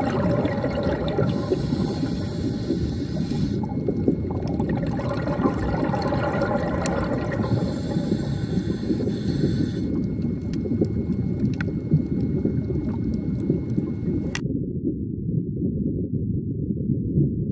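Underwater sea ambience: a dense, steady low rumble, with two hissing stretches of a few seconds each. Near the end the sound suddenly turns dull as its higher part drops away, leaving only the rumble.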